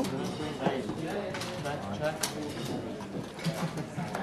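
Poker card room ambience: indistinct chatter of many players, with a few sharp clicks at the table from chips and cards.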